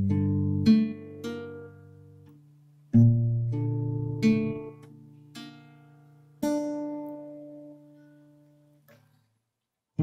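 Fingerpicked acoustic guitar playing a slow passage. Plucked notes ring over held bass notes, in three phrases that each start with a new bass note, then fade out shortly before the end.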